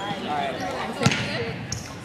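A single sharp hit of a badminton racket on a shuttlecock about a second in, echoing in a large gym.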